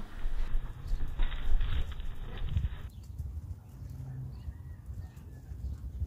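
A horse walking on a sand arena: soft, irregular hoofbeats over a steady low rumble, fainter in the second half.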